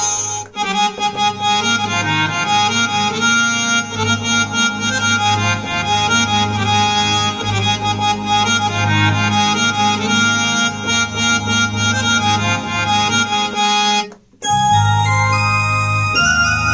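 Roland XPS-30 synthesizer played with a harmonium tone: sustained reedy chords under a melody line. The music cuts out for a moment about two seconds before the end, as the tone is switched, then carries on.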